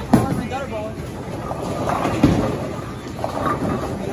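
A bowling ball rolls down a wooden lane with a low rumble, and pins clatter sharply a little over two seconds in, over the chatter of a busy bowling alley.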